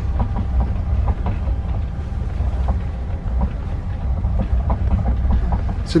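Steady low rumble of a Heathrow Terminal 5 ULTra pod, a small battery-electric, rubber-tyred driverless transit car, running along its guideway, heard from inside the cabin, with a few faint clicks and knocks.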